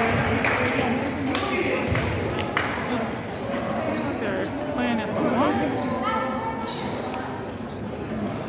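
A basketball bouncing on a hardwood gym floor, with short high sneaker squeaks from about the middle on and voices echoing in the large hall.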